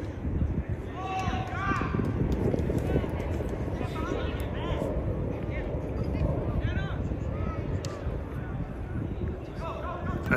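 Indistinct shouts and calls from players and spectators across a soccer field, a few short calls coming in bursts, over a steady low rumble.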